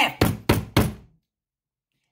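Three quick knocks, a hand striking the table about a third of a second apart, acting out blows with a staff.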